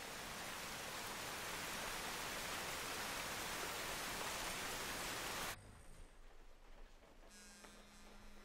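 Steady hiss of heavy rainfall, swelling slightly and then cutting off suddenly about five and a half seconds in, leaving quiet room tone.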